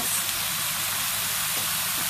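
Pork cutlets and onions sizzling steadily in a skillet.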